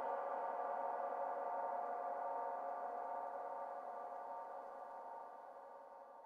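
A held electronic chord of several steady tones with no beat, slowly fading out as the closing tail of a house music mix.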